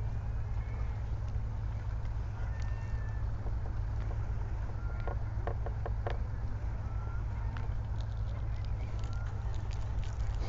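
A steady low outdoor rumble, with a few short high chirps scattered through and a quick run of light taps about five seconds in as soft pastel is pressed onto the painting board.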